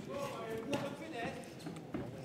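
Indistinct raised voices in a boxing hall, with a couple of sharp thuds as the boxers clinch: one a little under a second in, another at the end.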